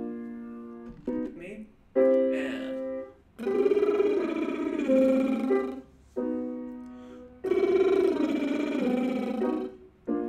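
A vocal warm-up exercise: a piano plays a short group of notes, then a singer sings the arpeggio back, and the piano-then-voice turn comes round twice.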